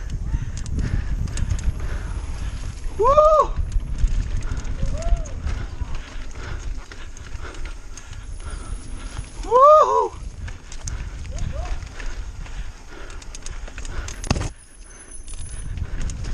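Mountain bike rolling down a dirt singletrack: a steady low rumble of tyres and wind on the camera, with scattered light rattles. Two short whoops that rise and fall in pitch come about three seconds in and again about ten seconds in.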